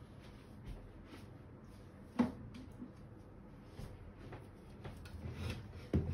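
Faint rustling and light taps of tarot and oracle cards being handled and drawn from a deck, with one sharper tap about two seconds in.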